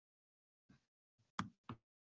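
Near silence, broken by a faint tick and then two short knocks about a third of a second apart, just past the middle.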